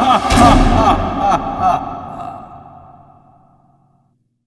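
End of a cartoon theme song: a voice sings a last wavering phrase over the music, with a couple of sharp hits about a second and a half in, and then everything fades away over the last two seconds.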